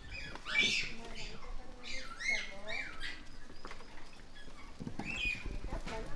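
Japanese macaques calling: a string of short, high squeaks and arched coo calls, several of them overlapping.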